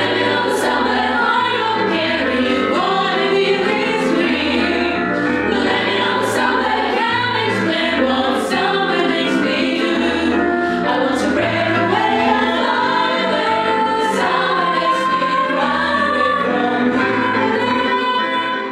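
Young women's vocal ensemble singing a pop song in close harmony, over a pulsing low bass line with crisp sibilant accents.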